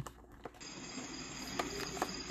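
Quiet room tone. About half a second in, a faint, steady high-pitched whine made of several thin tones comes in and holds.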